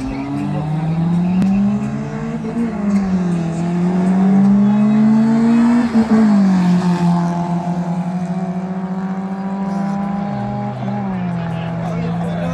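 Two Toyota Corolla sedans drag racing side by side at full throttle, an E100 'police shape' against an E110. The engine notes climb and drop back through gear changes, peak as the cars pass close about halfway through, then fall as they pull away.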